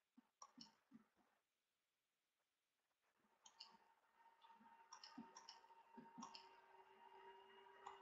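Near silence with faint scattered clicks: a few in the first second and a half, then more from about three and a half seconds in, over a faint steady hum.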